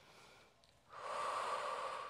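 A woman's long breath close to a clip-on microphone, a steady breathy rush of about a second that starts about a second in, as she folds forward into a seated stretch.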